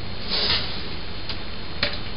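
Hands working a copper coil tube into the fitting on a stainless steel pot lid: a soft rustle about half a second in, then one sharp click near the end, over a steady background hiss.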